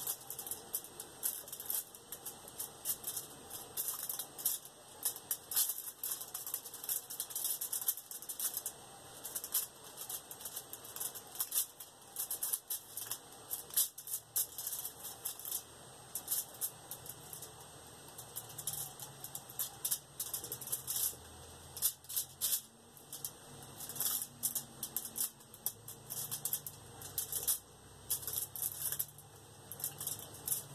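Irregular ticking and crackling from an X-Acto craft knife and hands working on an aluminium-foil-covered surface while cutting a circle out of black polymer clay.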